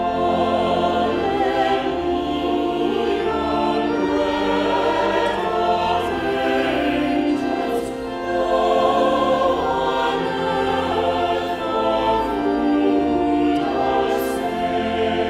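A small mixed choir singing a hymn in held, flowing phrases, with organ accompaniment underneath.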